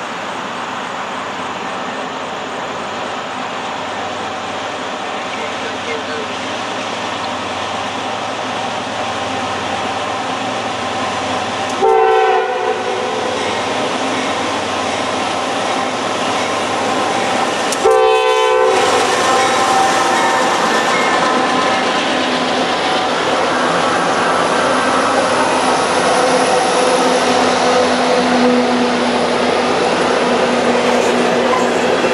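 Norfolk Southern diesel locomotives hauling a coal train approach, their rumble growing steadily louder. The lead locomotive's horn sounds two blasts, about 12 and 18 seconds in, the second a little longer. Near the end the empty coal hopper cars roll past.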